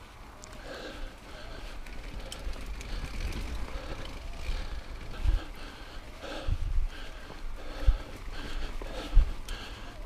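Mountain bike rolling down rough dirt singletrack: a steady rumble and rattle of tyres and bike over loose ground, with four low thumps from bumps in the second half. The rider is breathing hard, about one breath a second.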